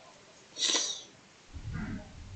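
A person sniffing once, sharply, through the nose, followed near the end by a short, low sound from the throat.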